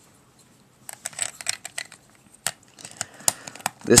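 Hard plastic pieces of a ShengShou 3x3 puzzle cube being handled, giving scattered light clicks and short clatters that start about a second in, with a couple of sharper clicks near the middle and later.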